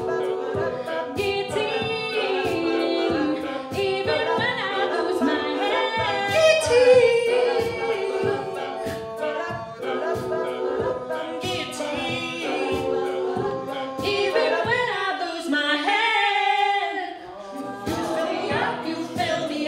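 Mixed male and female a cappella group singing a pop arrangement: a soloist over layered backing voices, kept in time by a steady vocal-percussion beat. The sound thins out briefly near the end before the full group comes back.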